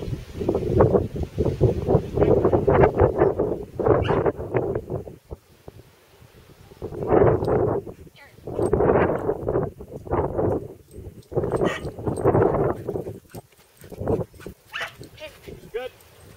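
A dog barking in repeated bursts, with quieter gaps between the bursts.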